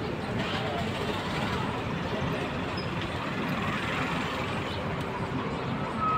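Street traffic noise: vehicle engines running steadily, with a low rumble and indistinct voices in the background.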